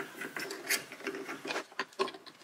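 Steel collet nut being turned by hand on a milling-machine collet holder while a shaft is fitted into the collet: faint, irregular metal clicks and rubbing.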